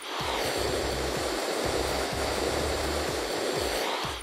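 Handheld hair dryer blowing steadily, an even rush of air with a faint high whine over it. It cuts in sharply and cuts off sharply.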